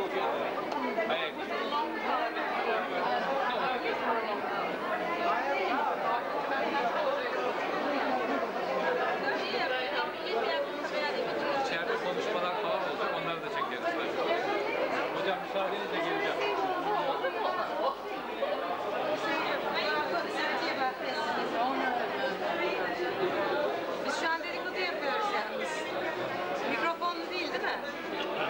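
Crowd chatter: many people talking at once in overlapping conversations, a steady hubbub with no breaks.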